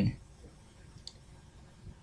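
Near-silent room tone with a single faint, short click about halfway through, just after a spoken word trails off.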